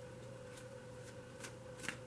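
A deck of tarot cards being shuffled by hand: three short, sharp card snaps, the loudest near the end, over a faint steady hum.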